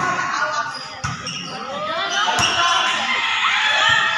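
A volleyball struck about four times in a rally, sharp slaps spread across the four seconds, with voices of players and onlookers calling out over them.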